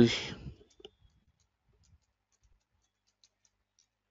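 Faint computer keyboard keystrokes, scattered single clicks as a word is typed.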